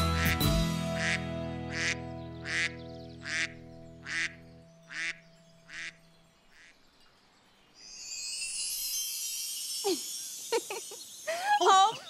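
The last chord of a children's song fades out under a string of about eight duck quack sound effects, evenly spaced and growing fainter. After a short lull a high, twinkling shimmer starts, and near the end comes a voice with swooping pitch.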